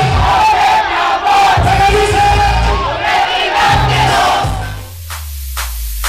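Loud party music with a heavy beat and a crowd singing and shouting along. About five seconds in, it changes abruptly to a sparser electronic track with a steady deep bass tone and scattered sharp hits.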